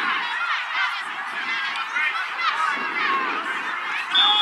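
A flock of birds calling, many honking calls overlapping throughout.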